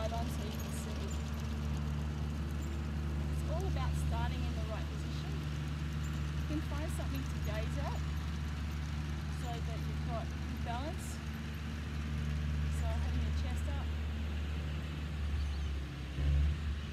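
Tractor engine running steadily with a low, even hum as it tows a beach-cleaning machine over the sand. Faint short chirps sound over it now and then.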